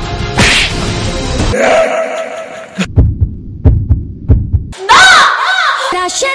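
Soundtrack of a film-trailer-style montage. A brief stretch of music gives way to a heartbeat sound effect: three double thumps, lub-dub, about two thirds of a second apart. It ends in a short swooping effect that rises and falls in pitch just before a song starts.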